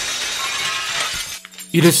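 A sudden crash-like burst of bright, crackling noise, a transition sound effect at a chapter cut, dying away about a second and a half in. A narrator's voice starts near the end.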